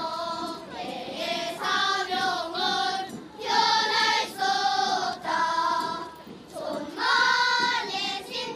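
A children's choir singing, sustained notes in short phrases with brief pauses between them.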